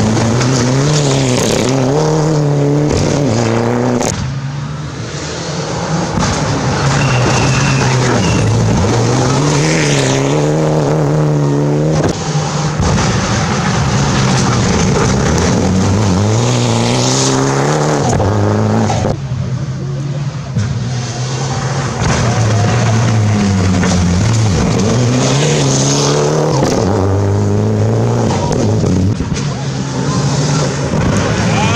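Rally cars, including Mitsubishi Lancer Evolutions with turbocharged four-cylinder engines, passing one after another through a gravel corner at speed. The engines rev up and fall back repeatedly through the gear changes, over the hiss of gravel thrown by the tyres. The sound jumps abruptly a few times as one car gives way to the next.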